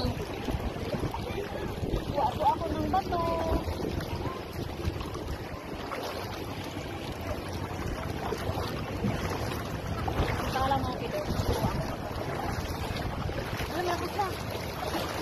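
Strong river current rushing over a shallow rocky bed, with wind buffeting the microphone in gusts. Faint voices come through now and then.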